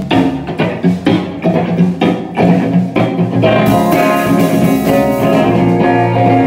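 Live rock band playing through amplifiers: electric guitar, bass guitar and drum kit. A few seconds of rhythmic, punchy hits, then a little past halfway a held chord with a wash of cymbals.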